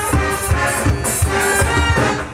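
Military band playing live, brass and saxophones over a steady low beat of about three pulses a second.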